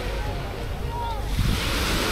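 Small waves washing onto a sand beach, with a wash of surf swelling about halfway through, and wind buffeting the microphone with a low rumble.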